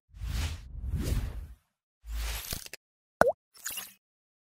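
Logo-animation sound effects: two soft swishes, a low hit with a crackle, a quick pitch-bending plop, then a last short swish.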